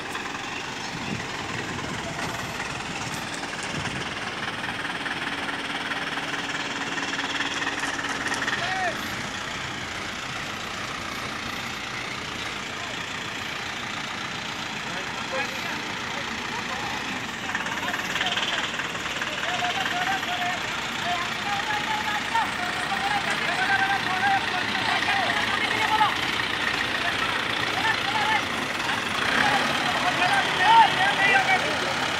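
Diesel engines of Escorts hydra mobile cranes running steadily as the cranes lift a dredge hull section off a trailer, with people's voices calling over them, more in the second half.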